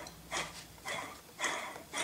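Mercedes M117 air injection (smog) pump, its electromagnetic clutch energised at 12 volts and its pulley turned by hand, giving even puffs of air about twice a second. The pump is pumping, showing that the clutch has engaged.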